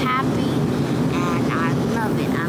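Steady low drone of an airliner cabin in flight, the engine and air noise heard from a passenger seat. A child's voice makes short wordless sounds over it at the start and about midway.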